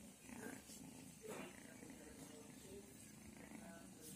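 Faint Qur'an recitation (qira'a): a voice chanting with some held notes, low in level.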